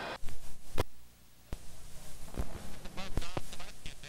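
VHS tape glitch at a recording break: sharp pops, a short dropout to near silence about a second in, then crackly noise with more clicks and faint garbled fragments of the soundtrack.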